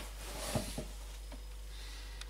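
Steady low room hiss with a few faint, soft handling clicks about half a second in.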